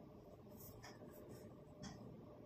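Faint scratching and a few soft clicks of knitting needles and yarn as stitches are slipped and crossed, with a slightly louder tick near the end; otherwise near silence.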